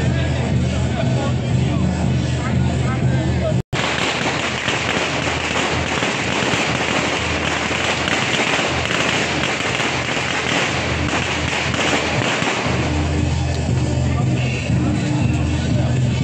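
Music with steady low tones, cut by a brief dropout a few seconds in. It is followed by the dense, continuous crackle of a string of firecrackers going off for about eight seconds. The music returns near the end.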